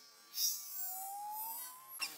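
Baby macaque crying: a high, hissy squeal about half a second in, then a thin whine rising in pitch.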